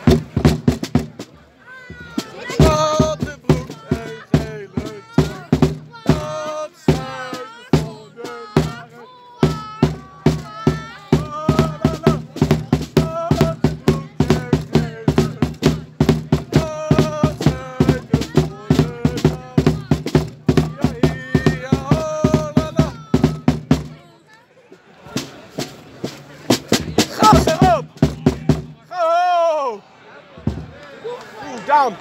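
A supporters' drum beaten close by in a fast, steady beat, with voices singing along over it; the drumming breaks off about 24 seconds in.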